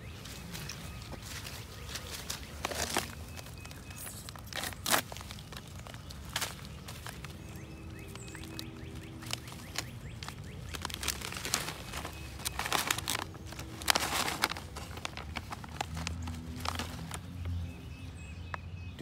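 Foil-lined freeze-dried meal pouch being torn open at its notch and handled, giving irregular crinkles and rustles of varying loudness.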